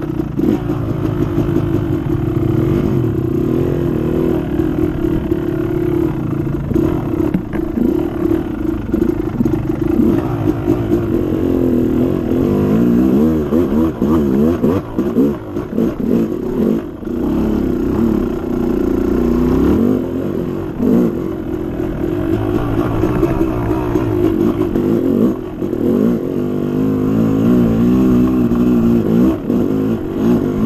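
Dirt bike engine running continuously while the bike is ridden, its revs rising and falling again and again as the throttle is worked, with brief drops around the middle.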